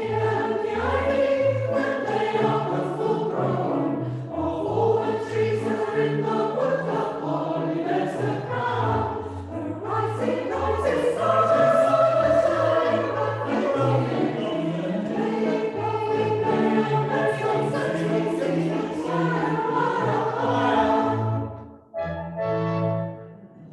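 Robed church choir singing in parts, with sustained low bass notes under shifting upper voices; the singing stops just before the end.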